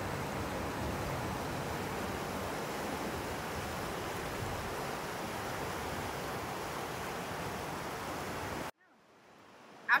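Snowmelt-fed mountain river rushing over rocks: a steady wash of water noise that cuts off abruptly near the end.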